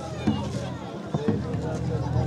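Several people's voices talking and calling over one another, with a few short low knocks in between.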